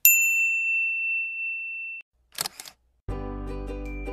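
A bright bell-like ding sound effect, ringing for about two seconds and then cutting off, as a notification bell icon is tapped. A short camera-shutter click follows a little later, and a music jingle starts near the end.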